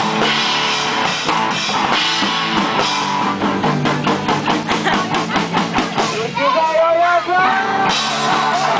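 Live rock band playing loud, with electric guitars and a drum kit; through the middle the drums hit a fast, even run of beats. Near the end a singer's voice comes in with a long, gliding sung line over the band.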